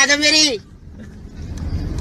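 A voice ends on a held word about half a second in, then a faint low rumble slowly grows louder.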